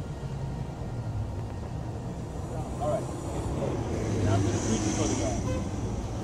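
City street traffic at an intersection: vehicle engines running with a steady low hum, distant voices, and a brief hiss about four and a half seconds in.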